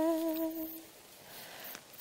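A woman's held sung note trailing off and fading out within the first second, followed by a short pause before she starts singing again at the very end.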